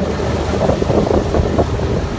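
Evinrude E-TEC 130 two-stroke outboard running on a moving skiff, with wind buffeting the microphone and water rushing along the hull.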